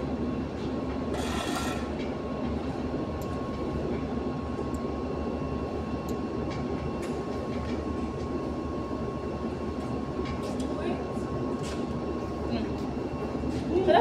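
Steady mechanical hum of a powered-on two-group espresso machine, with a thin constant tone over a low drone, a short hiss about a second in and a few light ticks.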